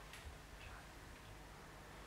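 Near silence: room tone, with a faint click just after the start.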